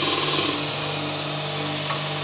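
Small belt-sanding machine running while its hard cloth belt grinds a golf club's ferrule down flush with the hosel, making a high hiss. The grinding stops sharply about half a second in, and the motor keeps running with a steady hum.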